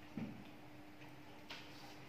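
Quiet room tone with a faint steady hum and a few soft, irregular clicks, one just after the start and one about one and a half seconds in.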